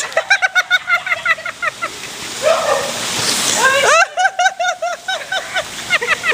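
Men laughing hard in quick repeated bursts, with a rising whoop into more laughter about four seconds in, over the steady hiss of heavy rain.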